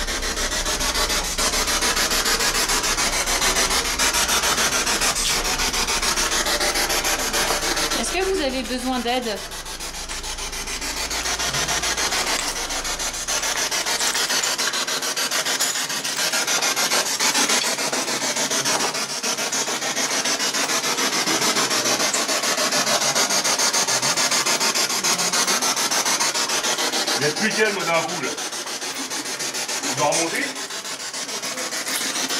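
Continuous rubbing and scraping of fabric against a handheld camera's microphone as the person holding the camera walks, with a low hum that stops about fourteen seconds in.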